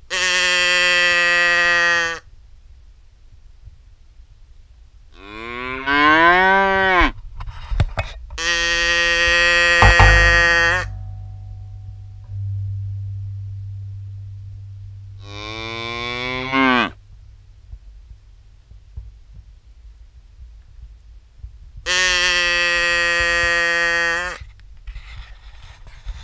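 Cattle mooing: five long, loud calls a few seconds apart, some held at one steady pitch and two rising in pitch as they go.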